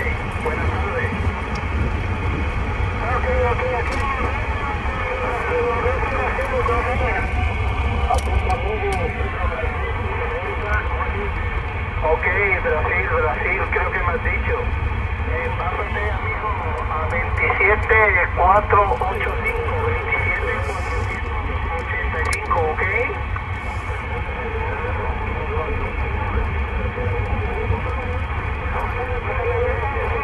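President Lincoln II+ CB radio receiving on 27.455 MHz in upper sideband: a steady hiss of band noise with faint, garbled voices of distant stations fading in and out on sky-wave propagation. The voices come through strongest a little past halfway.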